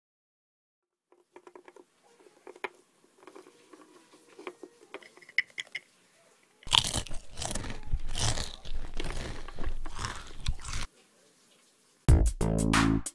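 Crunching and chewing, as of someone munching food close to the microphone, loud and irregular for about four seconds starting near the middle. Before it, faint scattered clicks and taps.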